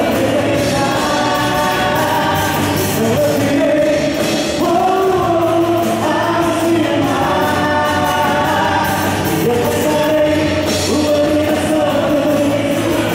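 A live Christian praise band playing, with electric guitars, keyboard and drums under a group of voices singing long held notes that glide between pitches.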